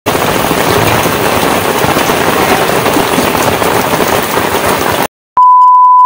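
Heavy rain pouring onto a wet paved street, a dense even hiss that cuts off abruptly about five seconds in. After a moment of silence and a click, a steady test-tone beep sounds from the colour-bar card until the end.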